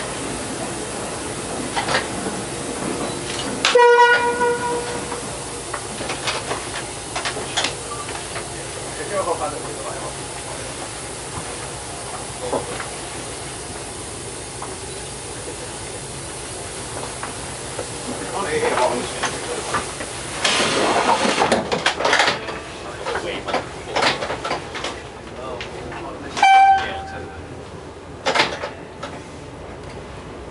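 Dm7 diesel railcar running slowly along the track, its engine and wheels making a steady noise with scattered clicks. About four seconds in it sounds a horn blast of about a second, and near the end a second, shorter and higher horn toot; a burst of rushing noise comes about two-thirds of the way through.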